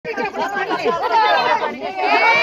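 Several women talking and calling out over one another in a loud, overlapping chatter.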